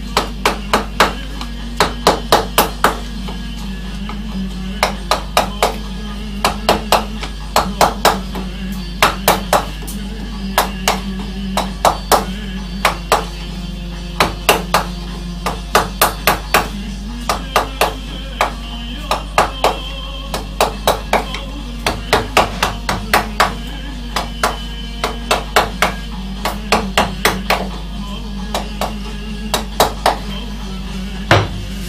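A rubber-headed mallet striking the handle of a wood-carving gouge as it cuts into a wooden panel. The sharp knocks come in quick groups of two to five, with short pauses between groups, over steady background music.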